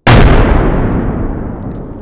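MK2 fragmentation grenade filled with RDX detonating among concrete barriers: one sudden, very loud blast that dies away in a long rumble over about two seconds.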